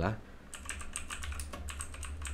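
Computer keyboard typing: a quick run of key clicks begins about half a second in and carries on steadily.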